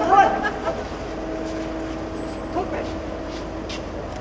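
Car idling with a steady hum, a short burst of shouting voices in the first second and a few faint clicks near the end.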